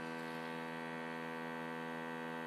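Airbrush mini-compressor's motor running with a steady, even hum while no air is being sprayed.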